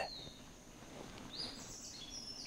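Faint outdoor birdsong: a few short, falling chirps, one at the start and one about a second and a half in, over low steady background noise.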